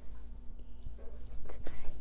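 A woman whispering faintly, sounding out a word under her breath between spoken prompts, over a low steady electrical hum.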